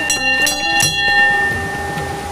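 Small hanging metal temple bell rung by hand, its clapper striking twice in quick succession, each strike ringing on in several clear bright tones that fade out over about a second.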